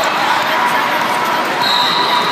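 Steady, loud din of a large hall with several basketball games going: balls bouncing and voices mixing. A high thin tone comes in near the end.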